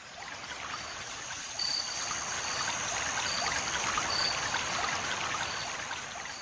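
Steady trickling, running water noise. It rises in from silence at the start and carries faint short high tones that recur every second or so.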